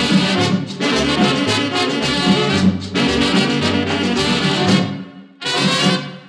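Vintage merengue band recording with horns playing an instrumental passage over a driving drum beat, fading about five seconds in and closing with one short final chord: the end of the song.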